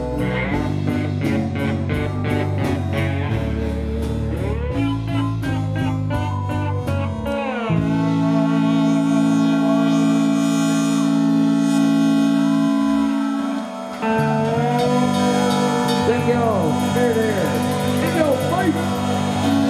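Live band playing an instrumental passage on electric guitar, electric bass and drums. About eight seconds in, the drumming drops away under long held notes. After a brief dip near fourteen seconds, the band comes back in with bending guitar notes.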